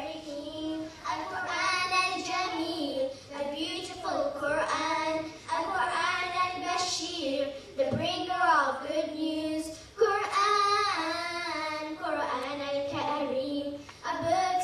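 A group of children singing together in melodic phrases, with no instruments showing up.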